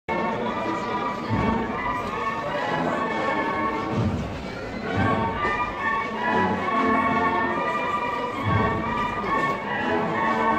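Cornetas y tambores band (bugles and drums) playing a processional march, the bugles holding a sustained melody over deep bass-drum beats.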